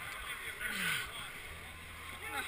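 Background voices of people talking, with one short vocal sound falling in pitch a little before halfway.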